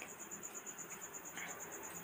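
A cricket chirping steadily and faintly in a continuous high trill of about a dozen even pulses a second.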